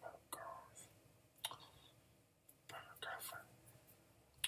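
Faint whispering in two short soft phrases, with scattered sharp clicks around them.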